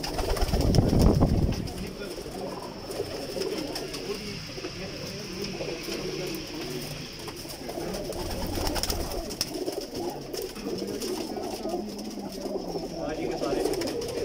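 A flock of domestic Teddy pigeons cooing in a small loft, many overlapping coos making a continuous low burble. A low rumble stands out in the first second or two.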